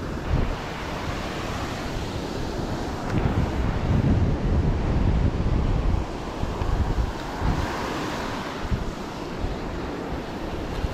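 Surf breaking and washing up the beach, with wind buffeting the microphone in a low rumble that is strongest for a few seconds in the middle.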